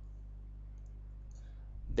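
Steady low electrical hum and faint background noise of the recording setup, with a few faint ticks about a second and a half in.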